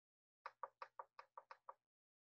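A quick run of about eight faint, light taps or knocks, roughly six a second, heard over a video call.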